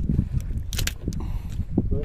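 A few sharp clicks of a wire hook remover working a hook free from a caught fish's mouth, bunched together just under a second in, over a steady low rumble.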